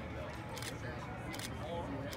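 Faint distant voices over steady outdoor background noise, with a few short high hissing bursts.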